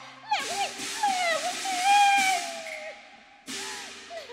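Cantonese opera performance: a performer's voice slides and bends in pitch over loud crashes of the percussion, with a second crash near the end.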